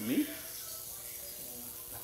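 Steady high-pitched hiss of a high-voltage, high-frequency electrical discharge. The current comes from a step-up transformer rig putting out roughly 100,000 to a quarter of a million volts, passing through a person's body to light a fluorescent tube.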